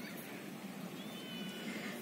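A faint, thin, high-pitched animal call lasting under a second, about halfway through, over quiet background hiss.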